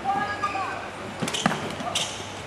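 Badminton rally: sharp racket-on-shuttlecock hits, three in the second half, with short squeaks of players' shoes on the court near the start.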